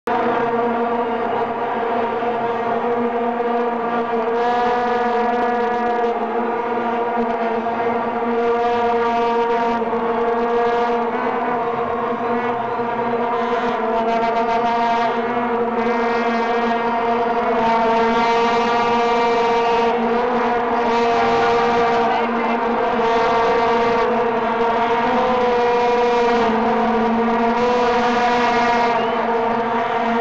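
Massed vuvuzelas blown by a stadium crowd: a continuous, even drone held on one low note.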